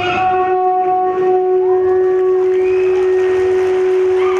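A blown horn-like wind instrument holds one long, steady note in the dance's music track.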